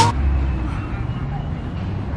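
Electronic background music cuts off right at the start, giving way to a steady low rumble of outdoor city background noise.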